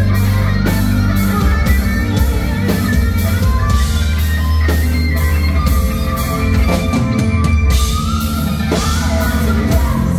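Rock band playing live at full volume: an electric guitar lead with gliding, bent notes over drum kit and bass.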